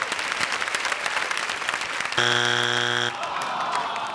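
Hands clapping, then about two seconds in a game-show strike buzzer sounds once: a loud, low, steady buzz lasting about a second, marking a wrong answer that is not on the board.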